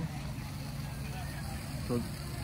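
Steady low rumble of outdoor background noise with faint voices of people around, in a pause in talking; a man says a short word near the end.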